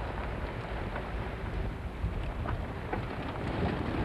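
Wind buffeting the microphone over the low rumble of a car driving on a rough dirt desert track, a steady rushing noise with no let-up.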